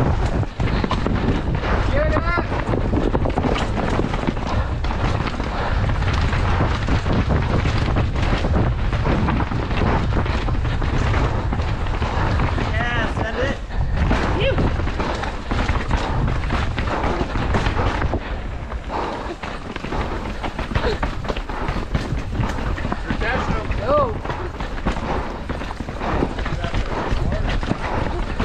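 Downhill mountain bike clattering and rattling over rocks and roots at speed, a dense run of knocks and jolts over a steady low wind rumble on the helmet-mounted microphone. The rider breathes heavily throughout.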